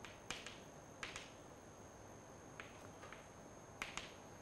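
Chalk tapping and scraping on a blackboard while words are written: a handful of short, sharp clicks, several coming in quick pairs.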